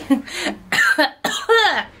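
A woman laughing and coughing in several short bursts.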